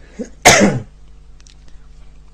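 A man's single loud, explosive burst from the throat and nose, sneeze-like, about half a second in, after a brief faint sound just before it.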